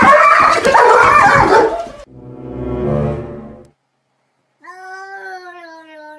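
A few seconds of loud, noisy dog barking that cuts off suddenly, then a short low sound that swells and fades. After a brief silence, a hairless cat gives a long drawn-out meow that falls slowly in pitch.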